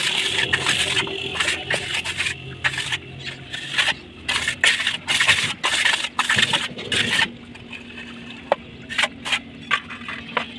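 Hand trowel scraping and smoothing wet cement in a steel tile mould, in a run of quick back-and-forth strokes that stops about seven seconds in, followed by a few light clicks.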